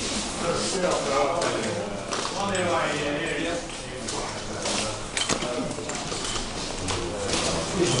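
Indistinct chatter of several people talking, with a low steady hum underneath.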